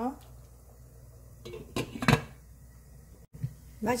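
A stainless steel soup pot being handled: a few metal knocks and clinks from the ladle and glass lid, the loudest about two seconds in, as the pot is covered to boil again.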